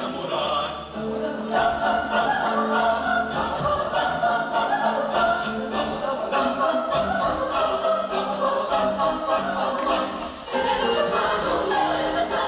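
Mixed youth choir singing an Ecuadorian folk song, many voices in harmony, with short taps marking the beat. The singing dips briefly about ten seconds in, then comes back fuller.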